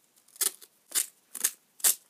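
Duct tape being handled: four short, crisp scratchy noises about half a second apart.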